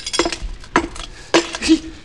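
Radio-drama sound effects: a few sharp clinks and knocks, some followed by short breathy vocal sounds.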